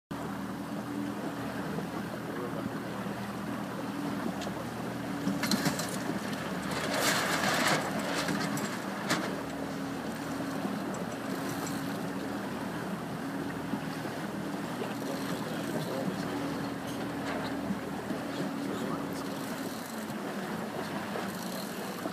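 Outboard motor of a boat keeping pace with a sailing dinghy, running steadily at low speed. Water splashing and wind noise sit under it, with a louder rush of noise about seven seconds in.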